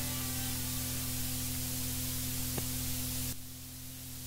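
Steady hiss with a low, constant hum in the gap at the end of a recorded song, the music already faded away. The hiss drops off abruptly about three seconds in.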